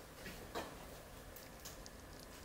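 Quiet room tone with a faint click about half a second in and a few softer ticks in the second half.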